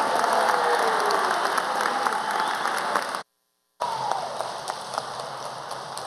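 Large audience applauding in a hall, with a few voices calling out in the first seconds. Just after three seconds in, the sound cuts out completely for about half a second. The applause then comes back quieter.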